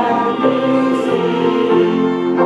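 Church string ensemble of violins and a cello playing slow, sustained chords, the harmony shifting about every second.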